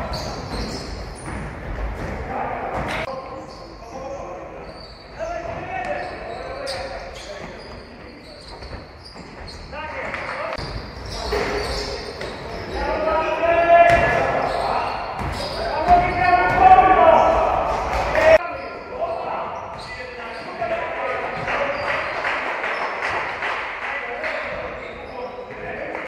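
Indoor basketball game: a basketball bouncing on the hardwood court and players shouting to each other, echoing in a large sports hall, with the loudest calls in the middle.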